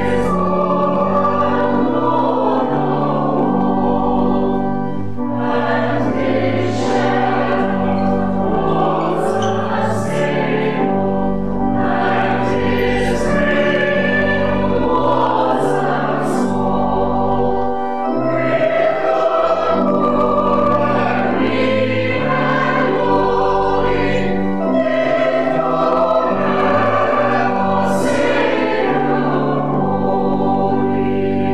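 A congregation and choir singing a carol together with organ accompaniment, in long held notes over a moving bass line.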